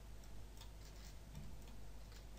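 A few faint, irregular clicks of a computer mouse over a low steady hum, as brush strokes are painted on screen.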